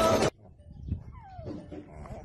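Music cuts off suddenly, then a Shar-Pei puppy gives one short whimper that falls in pitch, about a second in, with faint shuffling from the pile of puppies.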